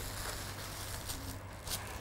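Quiet room tone with a steady low hum and a few faint rustles of handling, likely thin plastic food-prep gloves and the loaf being handled on the table.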